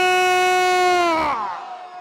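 A man's voice through a microphone holding one long, high, loud shouted vowel at a steady pitch, then sliding down in pitch and dying away about a second and a half in, leaving a faint tail.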